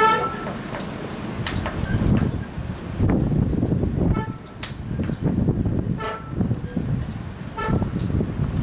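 Wind buffeting the microphone, with four short pitched tones like distant toots, the first and loudest at the very start, then three more in the second half.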